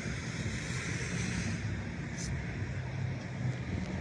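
Steady low rumble of distant road traffic.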